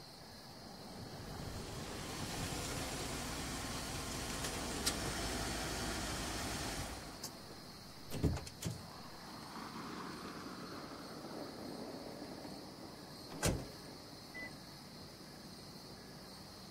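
A car's engine and tyres running for about the first seven seconds, then stopping abruptly. A few sharp clicks follow, and about thirteen seconds in a single loud thump of a car door.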